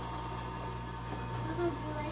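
Small battery-powered DC motor of a 4M Tin Can Cable Car toy running with a steady low hum.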